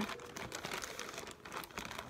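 Thin plastic shopping bag crinkling and rustling as a hand rummages inside it.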